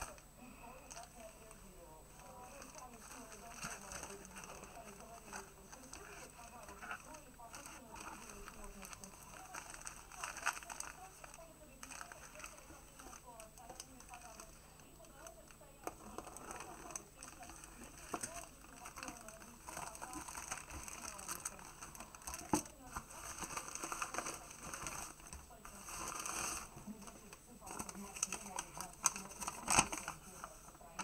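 Plastic postal mailer bag crinkling and rustling as it is handled and opened, with irregular crackles and a few sharp clicks. Faint voices are heard in the background.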